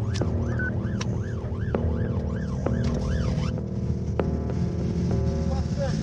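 Police car siren on a fast yelp, its pitch rising and falling about three times a second, cutting off after about three and a half seconds, over steady engine and road rumble.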